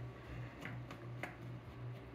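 Faint, scattered small clicks and taps of screws and fingers on the plastic case of an MSA Altair 5X gas detector as its cover screws are set back in, over a low steady hum.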